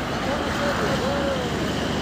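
Faint background voices talking over a steady low rumble of road traffic.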